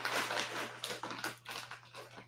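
Faint, irregular clicks and taps from working a computer while a web page is navigated, several a second, thinning out toward the end, over a faint steady low hum.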